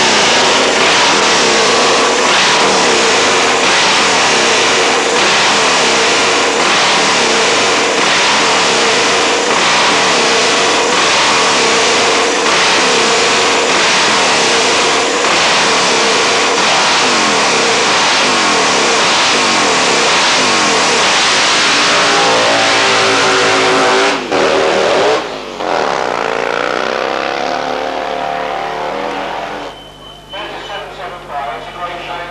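Drag-sprint motorcycle engine revved hard and repeatedly, the pitch swinging up and down without a break, then held steadier before two brief cuts about 24 and 25 seconds in; it then rises in pitch as the bike accelerates away and fades.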